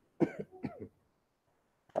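A man gives a brief cough to clear his throat: a short burst a fraction of a second in, trailing off in a few smaller sounds within the first second.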